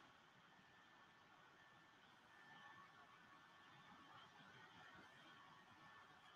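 Near silence: room tone, with only a faint low haze of sound.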